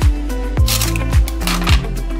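Background music: an electronic track with a steady kick-drum beat, about two beats a second, over a bass line, with snare-like hits.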